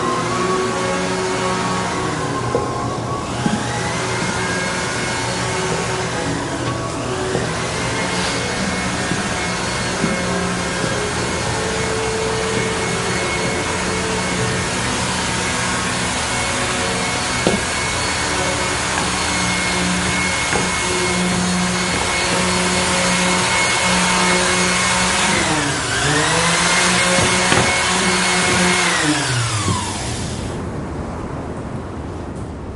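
Electric woodworking power tool running loudly and continuously. Its motor pitch sags and climbs back several times, then winds down near the end.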